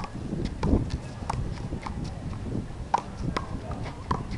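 A rubber handball being struck by hand and hitting the concrete wall and court during a rally: a string of sharp, irregular slaps, a few per second.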